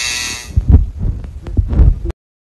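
Coil tattoo machine buzzing, fading out about half a second in, followed by a few irregular low thumps.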